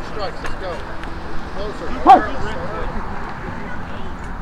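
Indistinct voices carrying across an open field, with one louder, short pitched cry about two seconds in.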